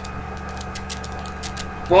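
Steady background hum made of several constant tones, with a few faint clicks.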